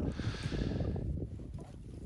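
Faint outdoor background noise: a low, uneven rumble with a hiss on top that fades away over the first second.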